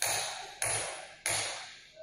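Repeated sharp taps with a ringing tail, evenly spaced: three strikes, each dying away before the next.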